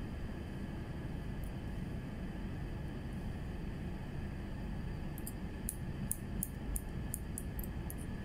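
Steel hair-cutting scissors snipping through wet hair: a quick run of about ten crisp snips, roughly three a second, starting about five seconds in, over a steady low hum.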